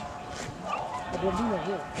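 A dog whining and yipping in short, bending calls, mostly in the second half, over a background of voices.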